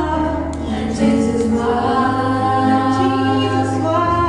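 Female vocal group singing gospel live, a lead voice over backing harmonies, with long held notes over a steady low keyboard accompaniment.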